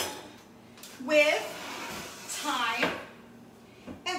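A fork pricking rolled matzo dough on a parchment-lined metal baking sheet, with light taps of the tines against the pan. A woman's voice sounds twice briefly, without clear words.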